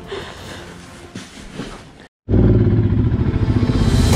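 Faint handling sounds, then after a sudden cut a Royal Enfield Himalayan's single-cylinder engine running loud and steady as the motorcycle rides off.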